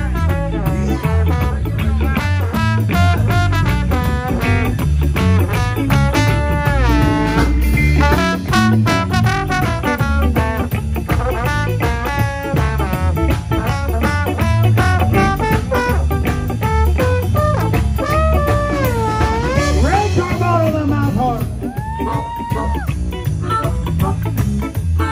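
Live blues band playing, with a trombone taking a sliding solo over electric guitars and drums.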